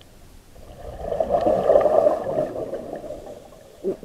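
Scuba diver's exhaled air bubbling out of the regulator, heard underwater: one surge of bubbling that swells about a second in and fades out over the next two seconds.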